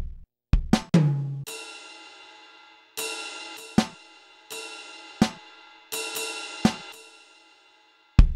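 Sampled drum sounds from a homemade 3x3-pad drum machine played with drumsticks: a few quick low drum hits, then a cymbal that rings and fades, struck again about every second and a half, with short sharp snare-like hits between the crashes.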